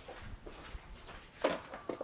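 Quiet kitchen room tone broken by a few faint knocks and clicks, the clearest about one and a half seconds in and another just before the end.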